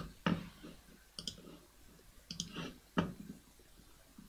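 A few quiet computer mouse clicks, irregularly spaced.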